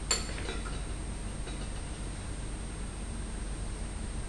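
A single sharp click a fraction of a second in, followed by a few fainter ticks, over a steady background hiss and hum.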